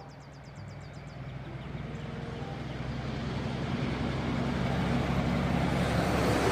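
A heavy semi-trailer truck's diesel engine hums steadily as the truck approaches, with road and tyre noise building, the whole sound growing steadily louder as it draws near and passes.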